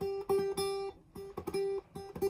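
Acoustic guitar played fingerstyle: a tremolo pattern of quick repeated plucks (thumb, thumb, middle, index) on the first string at the fifth fret, a repeated high A ringing over a lower note. The notes come in two quick groups with a short break between them.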